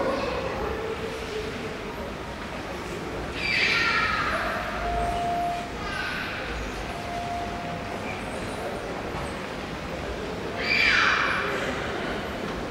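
A train approaching along the station tracks over a steady background rumble. There are two short, louder high-pitched sounds, about four and eleven seconds in, and brief steady squealing tones in between.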